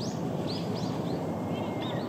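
Small birds chirping: many short, quick rising-and-falling calls scattered through the moment, over a steady low outdoor rumble of background noise.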